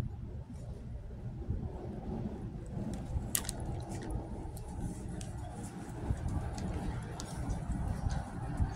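Outdoor background noise: a steady low rumble with a few faint clicks, and one sharper click about three and a half seconds in.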